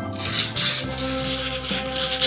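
Plastic spoon rubbing over a sand-painting board, pressing coloured sand onto the sticky picture: a loud, scratchy rasping that starts suddenly and goes on in uneven strokes, over background organ music.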